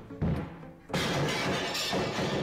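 Music with a few short low beats, then about halfway through a sudden loud crash of something breaking or shattering that carries on to the end.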